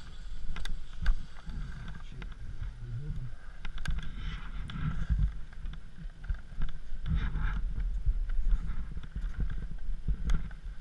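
Skis scraping and shuffling over crusty packed snow in a few slow bursts, with scattered sharp clicks from the ski poles and gear, over a low rumble of wind on the camera's microphone.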